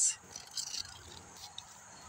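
Quiet outdoor background with faint rustling and a few light ticks, typical of a phone being moved about. A man's voice ends a word at the very start.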